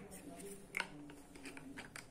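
A few faint clicks and taps of small containers being handled on a tabletop, with a faint voice in the background.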